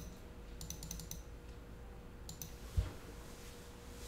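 Computer keyboard keys clicking in a quick run of about half a dozen keystrokes, with two more a little later. A single low thump near the end is the loudest sound.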